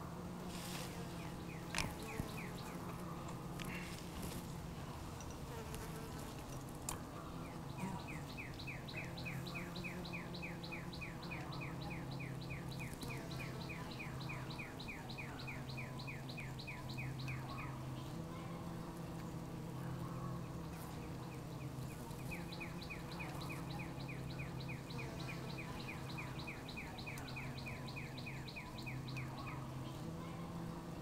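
Honeybee colony humming low and steady in an open hive. Over it, a rapid, even run of high chirps sounds twice for several seconds, with a few sharp clicks early on.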